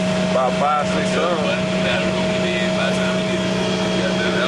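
Steady drone of an intercity coach bus heard from inside the passenger cabin, a constant low hum with a steady whine above it. Brief background voices come in between about half a second and a second and a half in.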